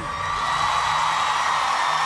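Live studio audience cheering loudly and steadily as a guest singer is welcomed on stage, with the song's backing music faint underneath.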